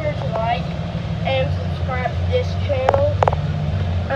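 High-pitched voices talking and exclaiming over a steady low hum, with a few sharp clicks near the end.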